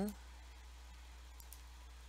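A few faint computer mouse clicks about one and a half seconds in, over a low steady hum.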